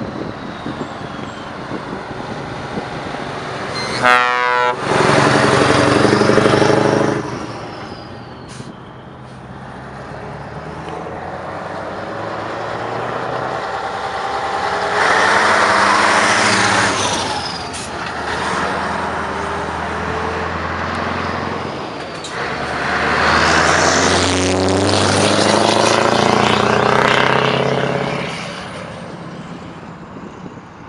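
Heavy trucks, among them a classic Scania 141 with its V8, pulling away past one after another in three loud passes, engines rising in pitch as they accelerate. A short air-horn blast sounds about four seconds in.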